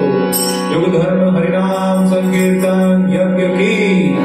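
Devotional kirtan music: a voice chanting over a steady, sustained drone.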